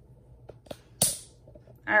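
Desk handling noise: two faint clicks, then one sharp click about a second in with a short hissy tail.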